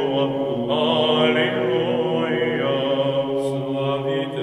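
Background music of chanted singing: a voice line moves slowly over a steady low held note.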